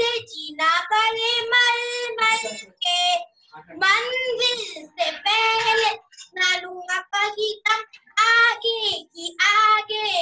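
A boy singing a Hindi patriotic song solo and unaccompanied, heard over a video call: held notes with short breaks for breath between phrases.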